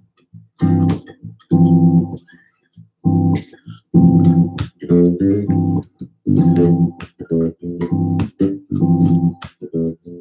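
Mattisson electric bass played as a chordal instrument: a crunchy G sus voicing plucked in a series of short chord stabs, each ringing about half a second to a second. Around the middle there is a quick run of single notes.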